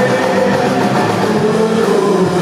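Live rock band playing at full volume, with electric guitars and a drum kit.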